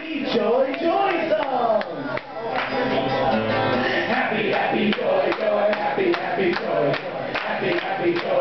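Live acoustic guitar strumming along with several men singing and shouting together into microphones, the voices sliding up and down in pitch.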